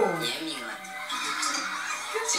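A young man speaking Korean from a played TV clip, with light background music under his voice.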